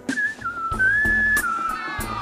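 A person whistling a sliding melody over a live band's steady drum-and-bass beat.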